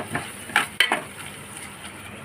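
A spoon stirring and scraping through a thick curry of onions, tomatoes and dried prawns in a metal pot, with a few sharp clicks of the spoon against the pot in the first second, then quieter.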